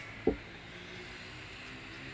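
A pause at a microphone over a sound system: faint steady low hum and room noise, with one brief low sound at the microphone about a quarter second in.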